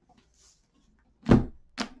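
A hardcover book set down on the back of a canvas stretcher frame: one dull thunk a little over a second in, then a lighter tap just after as it settles.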